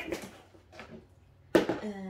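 Light handling of cardboard packaging with faint clicks, then a single sharp knock about one and a half seconds in as a skillet is set down on its box.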